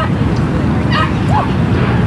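A dog barking, two or three short high yips in the second half, over a steady low rumble of wind on the microphone.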